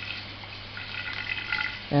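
A thin stream of distillate trickles from the reflux still's output into a glass measuring cylinder over a steady low hum. A voice starts at the very end.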